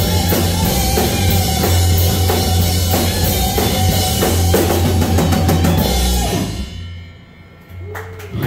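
Live rock band (distorted electric guitar, bass guitar and drum kit) playing loudly with steady drum hits, the song ending about six seconds in and the sound ringing out and dying away.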